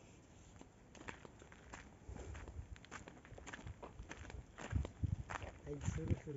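Footsteps on dry, stony ground: a series of uneven steps that grow louder from about two seconds in. A voice starts near the end.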